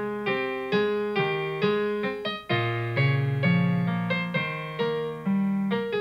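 Solo piano playing a slow, gentle melody, with a note struck about twice a second and each note dying away. Deeper bass notes join about halfway through.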